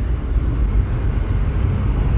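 VW Santana's engine running steadily, heard from inside the cabin as a low, even rumble.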